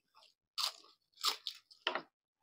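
Crisp fried papad being bitten and chewed close to the microphone: about four loud, dry crunches, the last near the end.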